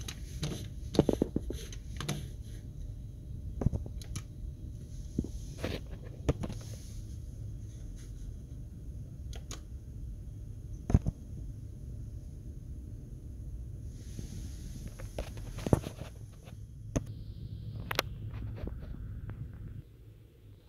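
Steady low hum from running computer equipment, with scattered sharp clicks; the loudest click comes about eleven seconds in.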